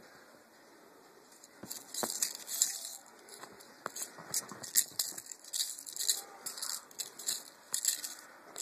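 Irregular rustling and crackling of bedding fabric, with light scratches and ticks, as a kitten plays with a cord toy on a bedspread. It starts about two seconds in and comes in uneven flurries.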